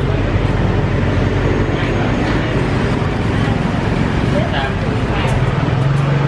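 A motor vehicle engine running steadily nearby, with people's voices in the background.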